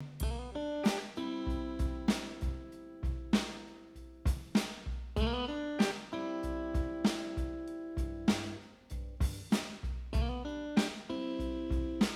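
Instrumental intro of a rock song: guitar chords ringing over a steady drum kit beat, with no vocals yet.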